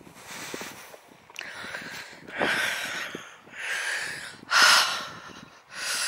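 The walker's breathing close to the microphone: a run of audible breaths in and out, about one every second, with the loudest near the end.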